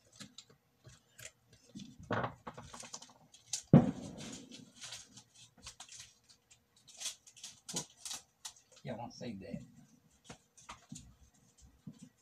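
Hand tools and a lithium-ion battery pack handled on a counter: scattered clicks, taps and short scrapes, with one loud knock about 4 seconds in.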